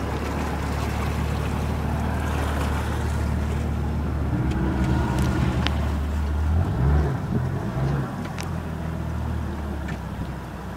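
Motorboat engine running steadily under way, a low hum with a hiss of wind and water over it; about seven seconds in the engine note wavers and shifts.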